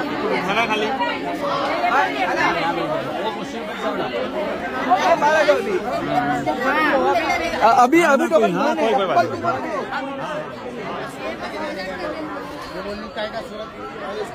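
Crowd of many people talking at once, an overlapping babble of voices with no single speaker standing out, loudest in the middle and easing off toward the end.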